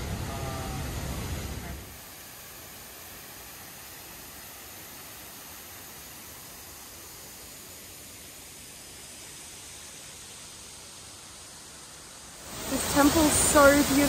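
A waterfall rushing loudly, cutting in suddenly about twelve seconds in after a long stretch of faint, steady hiss.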